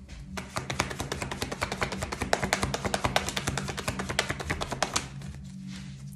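A tarot deck being shuffled by hand: a quick run of dry card-on-card flicks that stops about five seconds in. Soft background music runs underneath.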